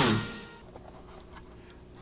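The tail of a swing-style background music cue: its last note slides down and dies away within about half a second, leaving a quiet stretch of room tone with a faint steady hum.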